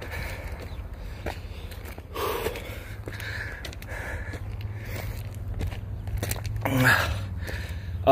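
Footsteps in sandals crunching and scraping on loose, sharp rock and gravel while climbing a steep trail, with the hiker's heavy breathing. A low steady drone runs underneath.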